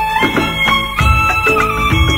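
Instrumental Nepali film-song music (a dhun, the song's tune played without vocals): a melody of held notes moving from pitch to pitch over a steady percussion beat and bass.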